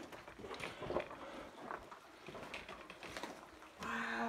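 Soft, irregular footsteps and scuffs on the rocky floor of a mine tunnel, a handful of short ticks spread out over a faint background hush.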